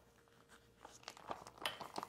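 Faint crinkling and small clicks of a pastry bag being gathered and twisted in the hands, starting about a second in after a near-silent moment.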